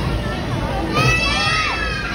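Children shouting and squealing over the hubbub of a crowd, with a loud high-pitched shriek about a second in.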